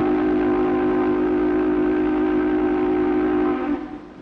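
Mill steam whistle blowing one long, steady blast that cuts off shortly before the end: the whistle calling the workers back to the reopened mill.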